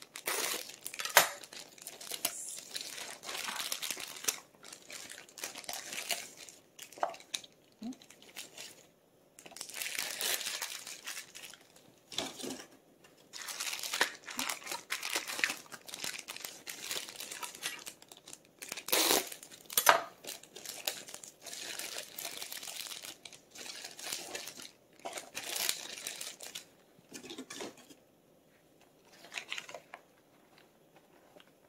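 Thin plastic produce bag crinkling and rustling in stretches as scallions are pulled out of it and handled, with a few sharp knocks against the cutting board.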